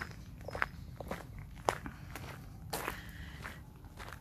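Footsteps of a person walking at an easy pace on a gravel path, about two steps a second, over a steady low rumble.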